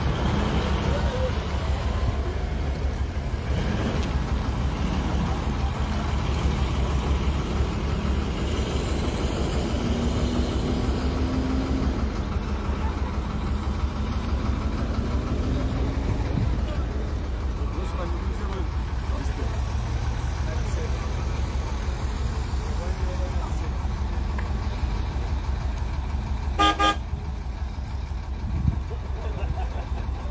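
Engines of police armoured trucks and SUVs running as a convoy moves slowly past, a steady low rumble. A short car horn toot sounds near the end.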